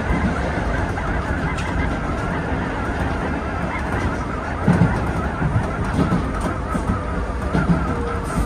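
Keisei 3400 series electric train running, heard from inside the driver's cab: a steady rumble of wheels on the rails with wavering higher tones over it, and heavier knocks at about five and at seven and a half seconds in.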